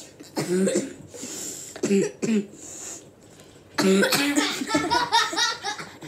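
Children laughing hard in fits: two short bursts, then a longer run of laughter from about four seconds in.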